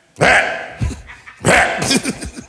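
A man laughing heartily in two loud, breathy bursts, the second near the end.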